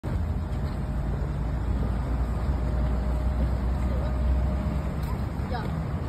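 Steady low hum of the electric blower that keeps an inflatable slide inflated, with a faint thin whine above it. High children's voices call briefly near the end.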